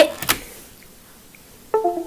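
A computer's device-disconnect chime, two short notes falling in pitch near the end, set off by a USB mouse being unplugged.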